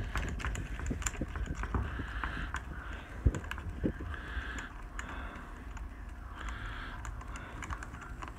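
Irregular small clicks and soft rubbing as fingers unscrew the metal spray tip from the plastic nozzle of a Ryobi 18V handheld electrostatic sprayer.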